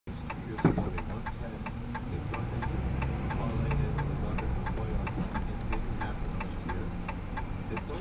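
A car's turn-signal flasher clicking steadily inside the cabin, about three clicks a second, over the low hum of the engine. A single louder knock comes about half a second in.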